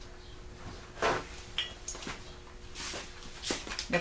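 A few scattered soft knocks and rustles of someone moving about and handling things in a small kitchen, over a faint steady hum.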